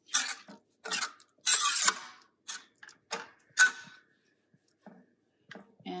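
Metal spoon scraping and knocking against a stainless steel pot while stirring a thick masala gravy, in irregular strokes with short pauses between them. The sharpest knock, about three and a half seconds in, leaves a brief ring.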